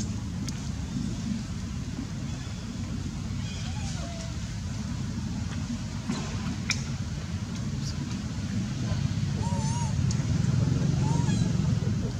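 Steady low outdoor rumble that grows a little louder in the second half. A few faint, short squeaky calls that rise and fall come about a third of the way in and twice near the end, with a single sharp click just past halfway.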